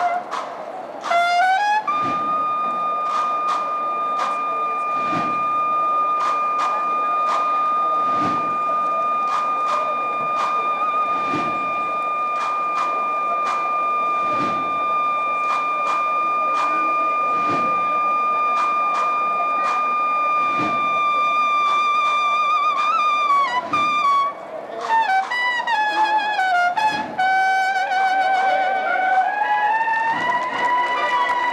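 A Spanish Holy Week cornet-and-drum band (banda de cornetas y tambores) playing a processional march. The cornets hold one long high note for about twenty seconds over steady drum strokes and a deeper drum beat about every three seconds. Near the end they break back into a moving melody.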